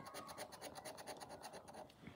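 The edge of a plastic poker chip scraping the scratch-off coating from a National Lottery Sapphire Multiplier scratchcard, in quick, faint back-and-forth strokes.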